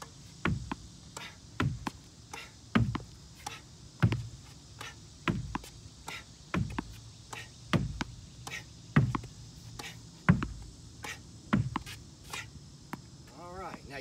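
Tennis ball rallied off a backboard with slice strokes: racket hits, the ball knocking against the wall and bouncing on the hard court, in a steady rhythm with the loudest knock about every 1.2 seconds.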